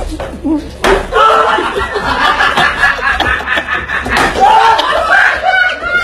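Sharp smacks of blows landing on a person's body, the loudest about a second in and again about four seconds in, over constant shouting and laughter from a group of young men.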